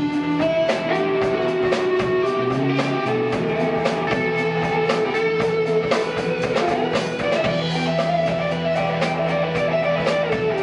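Live rock band playing an instrumental passage: a Les Paul-style electric guitar plays a lead line of held notes that step up and down, over steady drums and cymbals.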